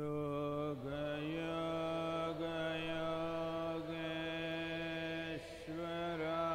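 A man chanting a mantra in a low voice on one long held note. The note slides up at the start, steps up slightly about a second in, and breaks briefly for breath about five and a half seconds in before it resumes.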